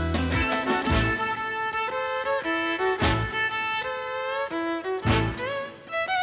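Fiddle playing a western swing blues line live on stage, held notes stepping from pitch to pitch, with the band punching short accents about every two seconds.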